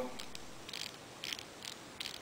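Faint, irregular small clicks and ticks from a BlackBerry Curve 8300's trackball being rolled to move the on-screen cursor.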